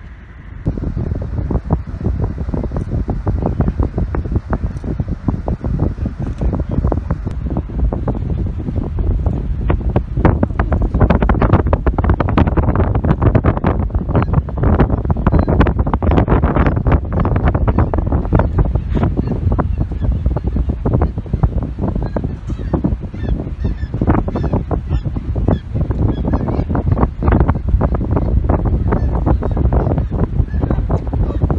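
Strong wind buffeting the microphone: a loud, steady rush with constant crackling, starting about half a second in.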